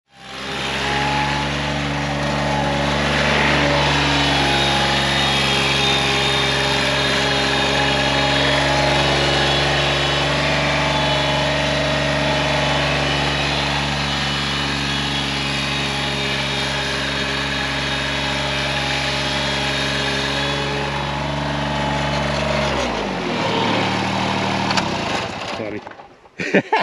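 Diesel engine of a Toro Greensmaster 3250-D ride-on greens mower running at a steady speed, then dropping in revs about 23 seconds in.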